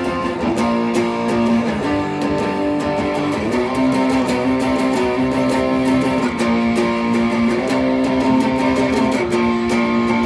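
Les Paul electric guitar through an amp and a JHS Bonsai overdrive pedal on its OD-1 setting, strumming driven chords in a fast, steady rhythm, the chord changing every second or two.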